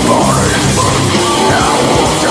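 Heavy metal song: distorted electric guitar riffing with drums under a harsh, yelled vocal line.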